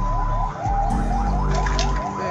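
Electronic emergency-vehicle siren sounding in quick, repeated rising sweeps over a steady tone, with a low engine hum underneath.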